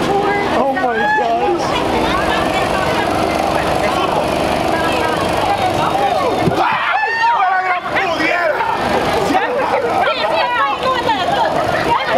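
Passers-by talking as they walk by, several voices overlapping in casual conversation.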